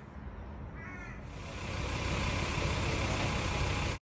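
A crow gives a brief run of calls about a second in, over a steady low outdoor rumble. From about a second and a half in, a steady rushing noise grows louder and then holds.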